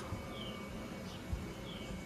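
Faint bird chirps outdoors: two short falling notes, one about half a second in and another near the end, over a steady low background, with a single soft low thump in the middle.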